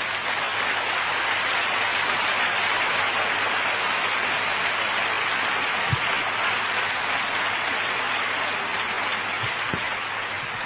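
Large audience applauding, a steady, dense clapping that holds at one level throughout, with a faint low electrical hum beneath.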